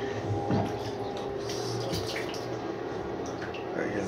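Water trickling and splashing into the bowl of a small homemade model toilet during a flush, over a steady low hum.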